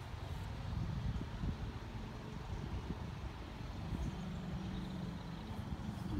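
Low, steady outdoor rumble with no clear single event.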